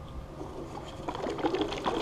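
Liquid polyurethane casting resin (Smooth-Cast 325 Part B) sloshing inside its plastic bottle as the bottle is shaken hard to remix the component before use. The sloshing starts about a second in and gets louder.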